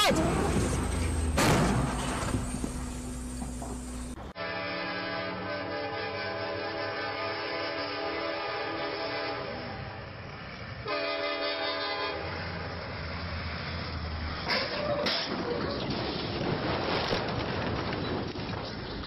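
Locomotive air horn sounding a long blast of several tones at once, held for about six seconds, then a shorter blast. Before and after it, a train rumbles along the rails, with a couple of sharp knocks near the end.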